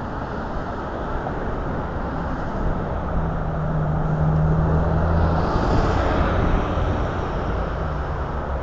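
Street traffic at a city intersection with a city transit bus driving past: its engine's steady low hum comes in about three seconds in, and the noise swells to a peak around five to six seconds before easing off.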